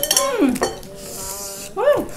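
Chopsticks and dishes clinking at a table while noodles are eaten, with a sharp click at the start and another about half a second in. A person's voice hums 'mm' over them.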